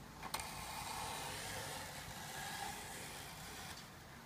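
Steady rubbing hiss of the wooden wing leading edge being worked by hand along its length, lasting about three seconds, after a single click just after the start.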